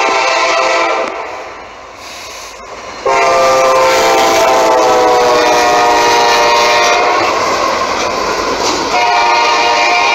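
Norfolk Southern SD70ACU locomotive's chime horn sounding as it passes: a blast that stops about a second in, then a long blast from about three seconds in whose chord drops in pitch as the locomotive goes by, and another blast near the end. The train's running noise fills the gaps.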